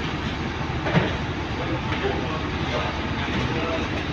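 Steady outdoor background noise with faint, indistinct voices, and one brief knock about a second in.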